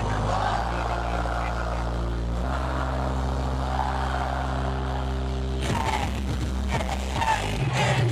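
Live concert music through the arena's PA, recorded on a low-quality camera microphone in an echoey ice hall. Sustained synthesizer chords change a couple of times, then about six seconds in the chords stop and a drum beat with a deeper bass starts.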